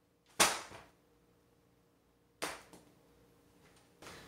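Two sharp thuds about two seconds apart, the first much louder, as a person drops down to sit on a carpeted floor, with a few faint taps after the second.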